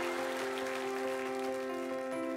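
Soft background music of slow held chords, with an audience applauding.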